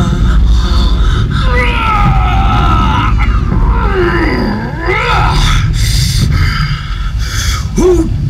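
Show sound effects over a theatre sound system: a constant deep rumble with long, swooping moaning calls that slide up and down in pitch, dipping low near the middle.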